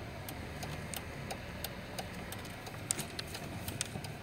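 Car engine running low and steady, heard from inside the cab, with faint ticking clicks spread through it.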